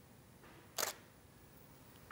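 A camera shutter firing once, a single quick click about a second in, as a flash shot is taken.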